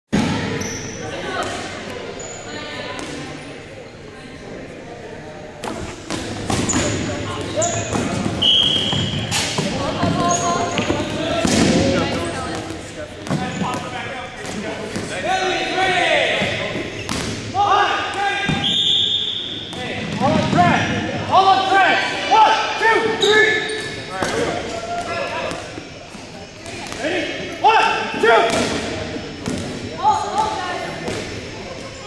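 Rubber dodgeballs bouncing and smacking off the hardwood gym floor and players at irregular moments, with short sneaker squeaks and players' voices, all echoing in a large gym.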